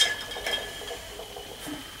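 A sharp click, then a few faint light clinks and taps of painting tools being handled on the worktable.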